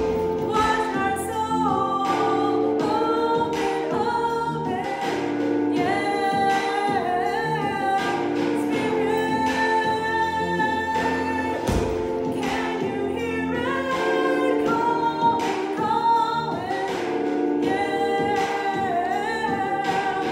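Gospel-style pop song with a female lead voice and a backing choir, singing over sustained chords and drum hits.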